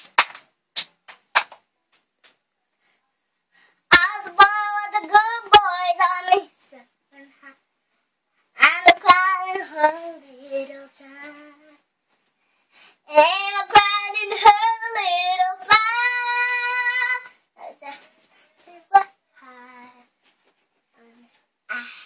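A young girl singing unaccompanied in three drawn-out phrases, starting about four, nine and thirteen seconds in, with sharp clicks in between.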